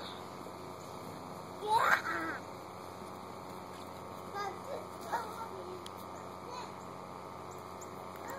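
A young child's loud, rising wordless shout about two seconds in, followed by a few shorter, fainter child vocal sounds.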